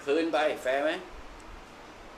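A person speaking a short phrase in Thai for about the first second, then quiet room tone.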